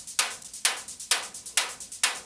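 Hi-hat loop synthesized on a Doepfer A-100 analog modular synthesizer: short, hissy hits in a quick steady pattern, with a louder, longer-ringing accent hit about twice a second and softer ticks between.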